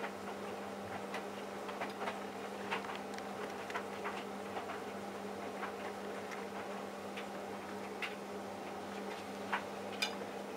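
Hotpoint Aquarius+ TVF760 vented tumble dryer running on its Iron dry program: a steady motor hum with the drum turning, and light irregular clicks, about one or two a second, as the tumbling load knocks against the drum.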